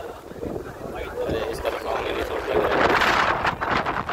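Sea surf breaking and washing over a rock breakwater, building to a louder surge of rushing water about two and a half seconds in.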